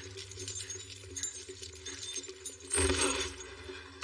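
Light clicks and clinks of small objects being handled, with a louder rushing scrape about three seconds in, over a low steady hum.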